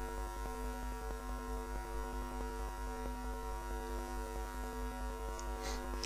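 Steady electrical hum in the recording, made of a low tone and a buzz of evenly spaced overtones, with nothing else over it.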